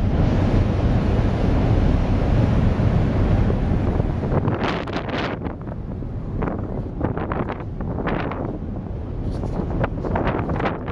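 Wind buffeting the microphone on a ship's open deck: a heavy, steady rumbling roar that eases after about four seconds into uneven gusts.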